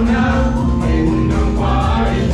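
A mixed group of men and women singing together into microphones, holding long notes over amplified backing music with a steady low beat.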